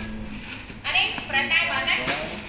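An indistinct voice speaking, starting about a second in.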